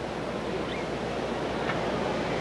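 Racetrack ambience as the field of trotters comes up to the start behind the starting gate: a steady rushing din with no clear beat, growing louder.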